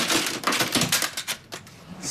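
A rapid, irregular run of sharp clicks and knocks, clattering for about a second and a half and then stopping.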